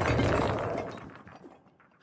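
A bagful of glass-like memory orbs pouring out onto a floor in a rush of glassy clattering and clinking, loudest at first and dying away over about a second and a half.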